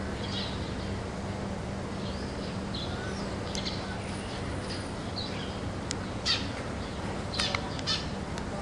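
Greater racket-tailed drongo calling: a string of short, sharp notes and brief whistles, coming more often in the second half, the loudest a sharp note about six seconds in. A steady low hum runs beneath the calls.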